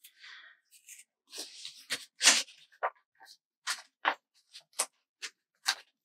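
Paper sticker sheets and tweezers being handled: rustling and crinkling with a string of short, sharp clicks as planner stickers are peeled and placed.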